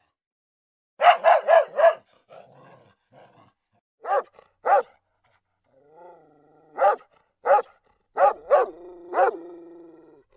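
Puppy yapping: a quick run of four high-pitched yaps about a second in, then single yaps every half second to a second. A softer drawn-out whine sits under the last yaps near the end.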